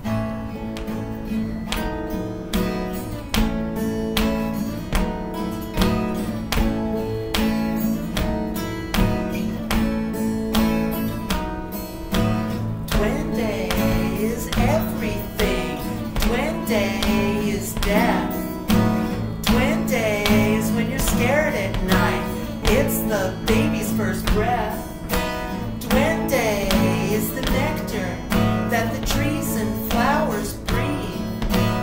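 Two acoustic guitars playing live, one strumming a steady repeating chord pattern and the other picking over it. About a third of the way in, a wavering melody line with vibrato comes in above the guitars.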